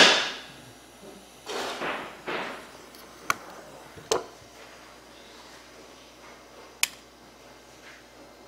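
Small handling sounds at a workbench: two short swishes, then three sharp, isolated clicks spread over several seconds, as wire and small hand tools such as wire strippers are handled and set against the bench.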